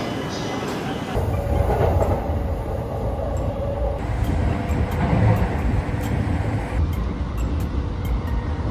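Commuter train running, heard from inside the car: a steady low rumble with wheel clatter. The sound changes abruptly about a second in and twice more as short clips cut together.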